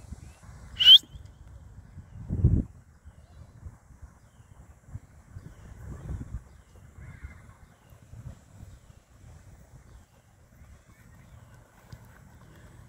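Outdoor ambience with a low rumble of wind on the microphone. About a second in comes one short, sharp, high-pitched call, and at about two and a half seconds a dull low thump.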